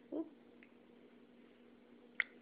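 Baby giving one brief wavering vocal sound, a fraction of a second long, with the feeding spoon in its mouth, just after the start; a faint steady hum lies underneath.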